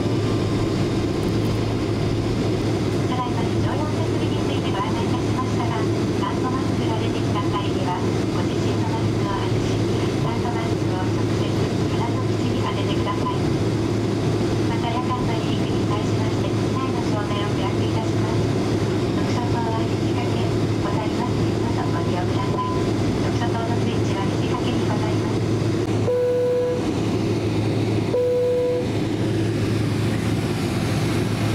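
Steady interior hum of a Boeing 767-300 airliner cabin, with a faint cabin-crew announcement over the PA underneath. Near the end come two short single-pitch chime tones about two seconds apart.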